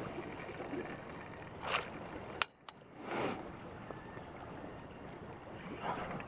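A hooked salmon splashing at the water's surface while being played on the line, in a few short splashes: about two seconds in, again past three seconds and near the end. Under them runs a steady outdoor hiss, with a sharp click and a brief drop-out in the sound at about two and a half seconds.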